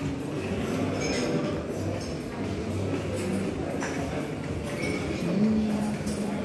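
Busy shop ambience: background music with held low notes, a murmur of voices, and a few light clinks of dishes or utensils.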